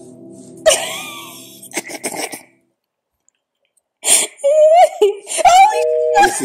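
A gong-like tone dies away, then a sudden loud cough-like vocal outburst breaks in about a second in. After a short dead-silent gap, voices exclaim near the end.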